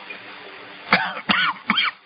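A person coughing and clearing their throat: three short, loud bursts about a second in, over a faint steady hiss.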